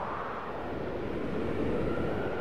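A low, engine-like rumbling roar that swells slowly, with a faint steady high whine coming in near the end.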